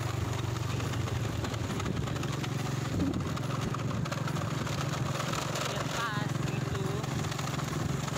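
Small motorcycle engine running steadily while riding along.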